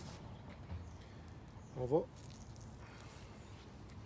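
Faint steady outdoor background with a low rumble and a few faint clicks, broken by one short spoken word about halfway through.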